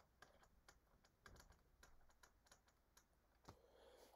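Near silence with faint, irregular light clicks and taps of a pen on a digital writing tablet as an equation is written out.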